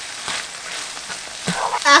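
Ground turkey, onion and riced cauliflower sizzling in an oiled saucepan, with a spatula scraping and stirring through it early on.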